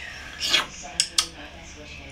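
Dishware being handled on a kitchen counter: a short scrape about half a second in, then two sharp clinks close together around a second in.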